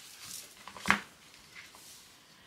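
Sheets of patterned paper and cardstock being handled and shifted by hand, rustling faintly, with one short sharp click just under a second in.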